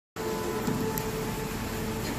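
Television playing a drama's soundtrack: a steady noisy background with faint held tones, heard from the set's speaker across the room.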